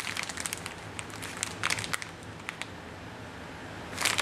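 Clear plastic bags of water-cooling compression fittings crinkling as they are handled, a run of sharp crackles that thins out over the last second or so.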